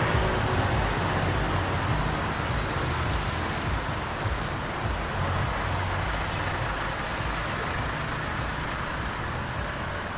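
Steady road traffic noise from cars and buses passing on a busy city avenue, a continuous low rumble that eases off slightly over the stretch.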